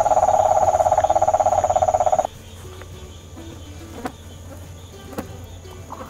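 Cane toad giving its long trill, a steady low-pitched run of rapid even pulses that cuts off suddenly about two seconds in. After it, quieter night background with a few faint clicks.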